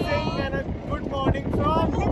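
Wind buffeting the microphone over a low rumble in an open-roofed jeep, with people's voices calling out.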